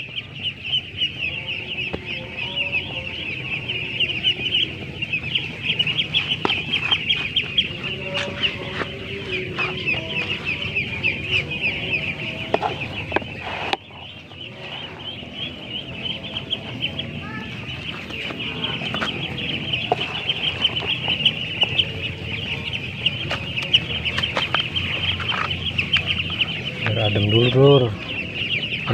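A flock of ducklings peeping continuously in a dense, high chorus, hungry and waiting to be fed. Occasional light knocks and scrapes of a wooden spatula on a plastic basin come through.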